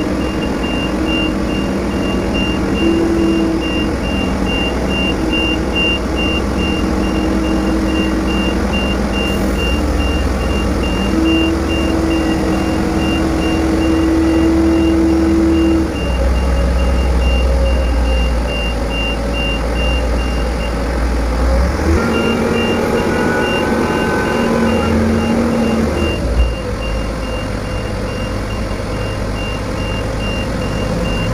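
A Liebherr LTM 1800 mobile crane's diesel engine running under load while the boom slews, with steady hums that shift in pitch; the low drone is heaviest from about 16 to 22 seconds in. A rapid, evenly repeating high warning beep sounds over it and cuts out for about a second around 21 seconds.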